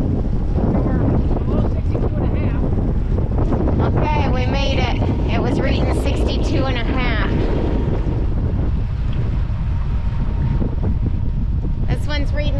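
Wind buffeting the microphone on the deck of a moving catamaran: a steady, loud low rumble. Indistinct voices come through for a few seconds in the middle.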